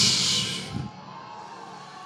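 Soft sustained background music under a church service, opening with a short, loud hiss that fades within the first second.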